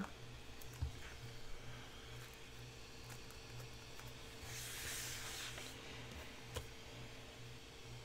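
Quiet hand-crafting sounds while gluing paper onto a small notebook cover: a faint click about a second in, a short soft paper rustle about halfway through, and another faint click near the end, over a low steady electrical hum.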